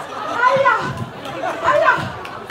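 People talking and chattering, with two louder stretches of voice about half a second in and near the end.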